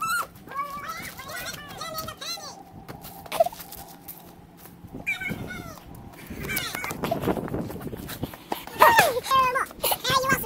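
Teenage voices yelling and squealing in short wordless bursts, the loudest a falling squeal near the end.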